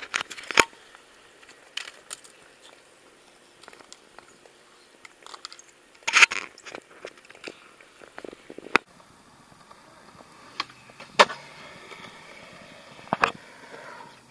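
Skateboard wheels rolling over concrete with a series of sharp clacks and knocks of skateboards hitting the ground, the loudest about six seconds in.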